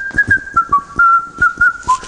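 A man whistling a tune in short held notes that step up and down in pitch. Under it are sharp clicks or taps, about three a second.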